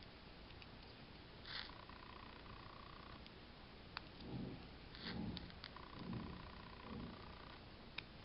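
Faint handling sounds of spool knitting: a few light clicks as a metal hook catches on the wire pins of a homemade knitting spool, with soft rustling and thuds of hands and yarn in the second half.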